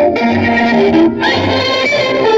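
An old Pakistani film song playing on the radio through the National Panasonic RQ-543 radio cassette recorder's speaker: instrumental music with a low beat about once a second.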